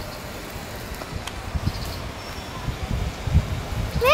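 Wind rumbling and buffeting on the microphone over a steady outdoor hiss, with irregular low thumps that get stronger in the second half.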